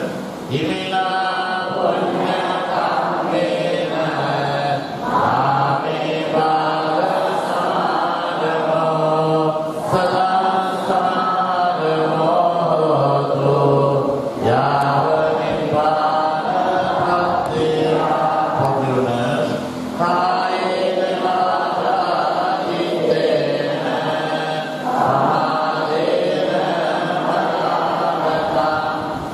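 Buddhist monks and congregation chanting Pali verses together in a steady, continuous recitation.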